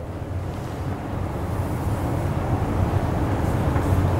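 Steady background noise of the room, picked up by a lapel microphone in a pause between words, growing gradually louder.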